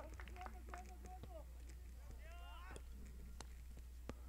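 Faint voices of players calling and shouting from across an outdoor football pitch, over a low steady hum and a few light clicks.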